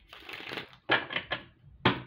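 Tarot deck being shuffled by hand: a papery rustle of cards, then a few quick slaps of cards about a second in and one sharper slap near the end.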